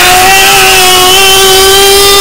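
A man's long held yell on one steady pitch, heavily bass-boosted and distorted, playing at near-maximum loudness.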